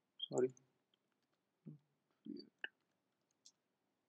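Faint clicks of a computer keyboard during code editing: two short, sharp clicks in the second half, among a few soft low sounds.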